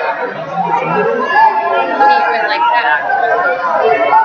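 Overlapping voices chattering in a large hall, several people talking at once with no single clear speaker.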